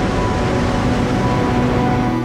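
Hot air balloon's propane burner firing in a steady blast of rushing noise, with music playing underneath.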